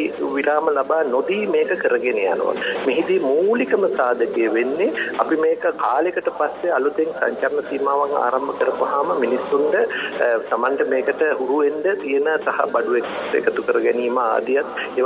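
Speech only: a person talking without pause in a broadcast talk, the voice thin and narrow in sound.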